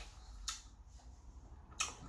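A quiet pause over a low steady hum, broken by a single short click about a quarter of the way in and another brief click near the end.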